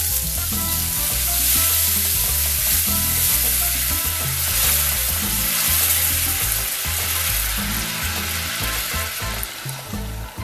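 Orange juice sizzling and boiling hard as it hits hot caramel in a frying pan, stirred with a silicone spatula: the caramel being deglazed into an orange sauce. The sizzle is loud and steady, easing slightly near the end.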